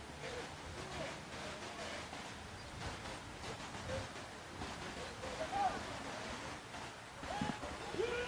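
Faint open-air ambience at a rugby match: scattered distant player voices and short calls over a steady background hiss.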